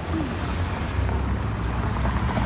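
Cars driving past close by on a brick-paved street: a steady low rumble of engines and tyres.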